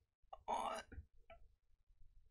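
A man's brief non-word vocal sound, loudest about half a second in, with a couple of fainter short vocal sounds just before and after it.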